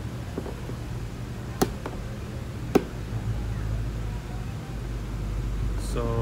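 Two sharp clicks about a second apart, from a metal screwdriver tip pushing in and prying at the plastic push-type rivet that holds a scooter body panel, over a steady low hum.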